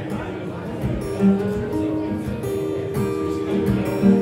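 Acoustic guitar strummed steadily through chords in a live instrumental passage of a song, with a louder stroke about a second in.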